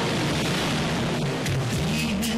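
Steady rush of breaking ocean surf with low music notes underneath. Sharp percussion strikes come in near the end as the theme music starts.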